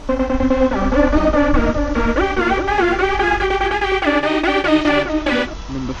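Electronic dance music: a synth melody over a steady beat. It stops about five and a half seconds in.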